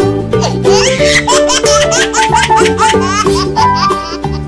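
Upbeat children's background music with a repeating bass line, with what sounds like baby laughter mixed in.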